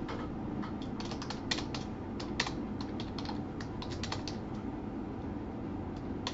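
Typing on a computer keyboard: irregular runs of quick key clicks with short pauses between them, thinning out in the last second or so.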